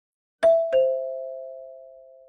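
Two-note ding-dong chime: a high note, then a lower one about a third of a second later, both ringing out and slowly fading.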